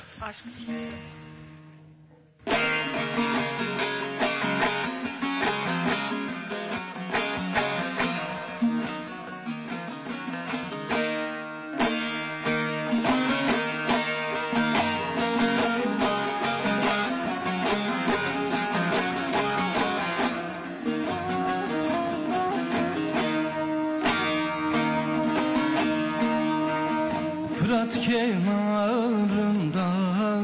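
Bağlama and other plucked string instruments playing the instrumental introduction to a Malatya folk song (türkü). Fast, densely plucked notes start abruptly about two and a half seconds in, after a fading ring and a short pause.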